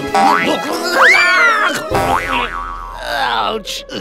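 Cartoon sound effects over background music: a rising whistle-like glide, then a springy boing that swoops up and falls away, as a paw lands on a rubber ball. The music breaks off about halfway through, leaving a low rumble and a brief cartoon voice.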